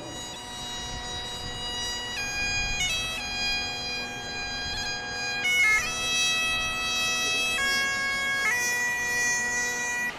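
Bagpipes playing a slow melody of held notes over a steady drone, with a quick ornamented flourish a little past the middle.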